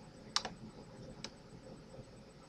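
Two sharp clicks of a computer key, a little under a second apart, the first one louder, over faint room noise.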